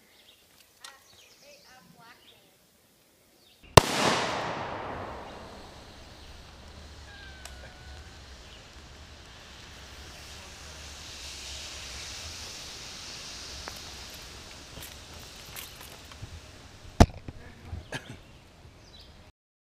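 Two sharp AR-15 rifle shots, about thirteen seconds apart, striking damaged lithium-polymer battery packs. After the first shot comes a loud hiss that fades over a couple of seconds, then a steady hiss as the punctured cells vent smoke.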